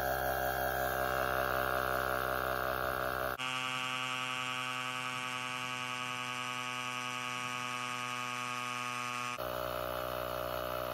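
AstroAI cordless 20V tire inflator's electric air compressor running under load, pumping a bicycle tire up toward its 30 PSI preset. A steady pitched hum, its tone changing abruptly about three and a half seconds in and again near the end.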